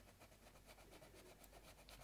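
Faint scratching of a Castle Art coloured pencil on paper in quick, repeated strokes, block-filling a leaf with firm pressure.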